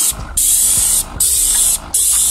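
Paint sprayer hissing as the gun sprays paint onto an exterior wall. The spray comes in bursts broken by short gaps, about three times in two seconds.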